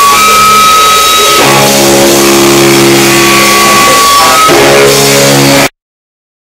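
Rock band playing, the electric guitar ringing out long held chords. The sound cuts off abruptly near the end.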